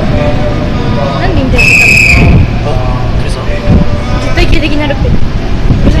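Voices talking over the low rumble of a train creeping slowly into the platform. A single short, shrill whistle about one and a half seconds in.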